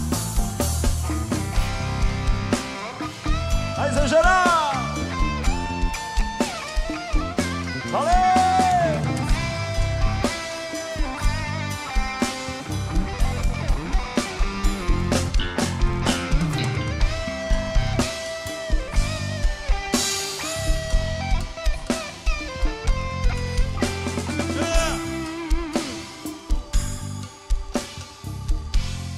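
Live band playing an instrumental passage: drum kit and guitar keep a steady beat while a lead melody with bending, gliding notes runs over it.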